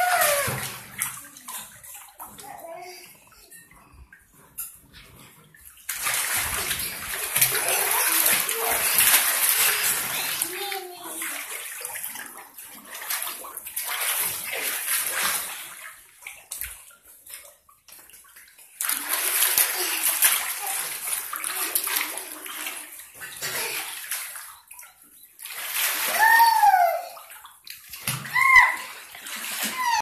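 Water sloshing and splashing in a shallow above-ground frame pool as a small child wades and moves about, coming in several bursts a few seconds long with quieter gaps between. A child's short high voice sounds over the water near the end.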